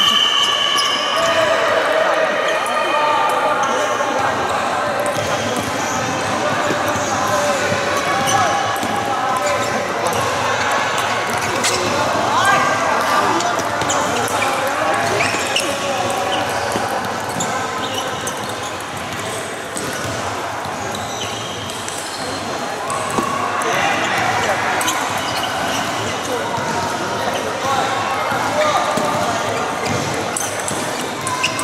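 Table tennis balls clicking off rackets and tables in a rally, with more ball clicks from neighbouring tables, over indistinct background chatter in a large hall.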